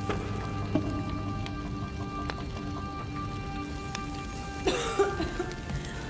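Film soundtrack of a fire scene: a fire crackling under sustained music, with a sudden crash a little past two thirds of the way through.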